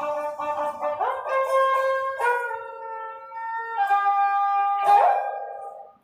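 Ravanahatha, a Rajasthani bowed folk fiddle, playing a melody of long held notes that move in steps, with new bow strokes sounding about one, two and five seconds in. The playing fades out at the very end.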